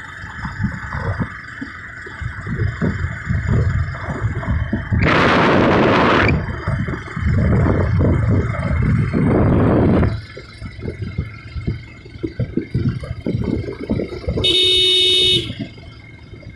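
Wind buffeting the microphone while moving along the road, with a loud rushing burst about five seconds in. Near the end a vehicle horn sounds once, for about a second.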